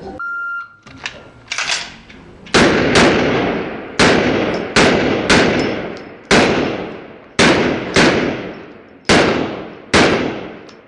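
A shot timer's start beep lasts about half a second. A pistol is then drawn and fired in a rapid IPSC string: a softer report or two, then about ten loud shots at an uneven pace, some in quick pairs. Each shot leaves a long echo off the walls of the bay.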